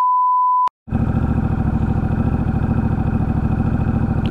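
A steady single-pitch test beep for the first second, cut off abruptly. After a short gap comes a Honda Rebel 1100's parallel-twin engine idling steadily through a short aftermarket Coffman's Shorty exhaust.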